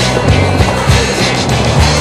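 Skateboard wheels rolling on rough asphalt, with a few sharp clacks, under background music with a steady bass line.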